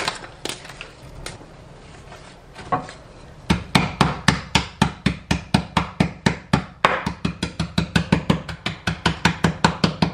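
A wooden rolling pin pounding ginger biscuits wrapped in a folded paper napkin on a table to crush them: a fast, even run of knocks, about five a second, starting about three and a half seconds in. Before that, a few scattered crunches and clicks as the biscuits are broken by hand.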